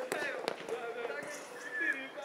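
A football kicked once with a sharp thud about half a second in, over voices talking and calling out.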